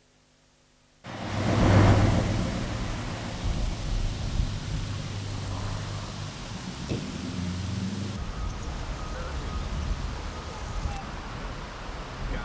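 Near silence for about a second, then outdoor street sound with a vehicle engine running steadily. There is a single knock near the middle.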